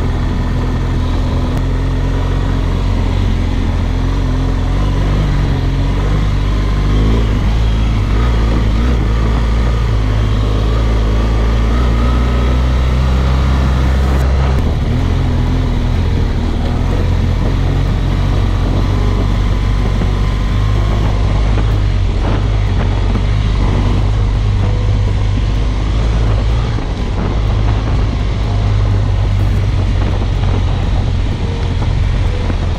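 BMW R1200GS Rallye's boxer-twin engine running while riding a dirt track, with wind and tyre rumble on the bike-mounted microphone. The engine note changes about halfway through.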